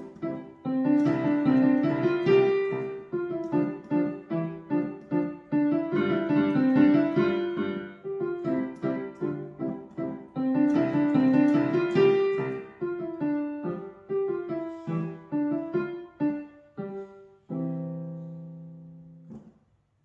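Casio digital piano playing a simple beginner piece: a steady run of separate notes and short chords, ending on a held low chord that fades out near the end.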